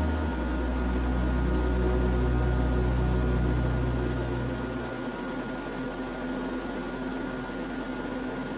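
A low sustained chord from the ambient background music dies away about five seconds in, leaving a steady hiss with a faint high hum.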